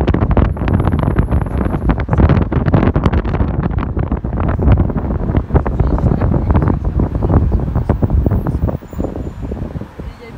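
Wind buffeting the microphone in a moving car, a loud irregular rumble over road noise, which drops off near the end.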